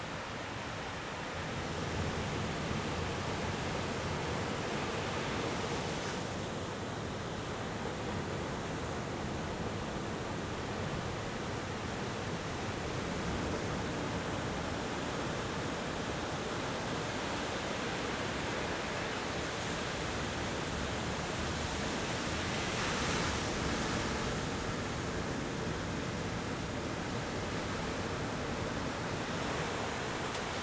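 Ocean surf: waves breaking and washing up the shore in a steady rush, with one louder surge about three quarters of the way through.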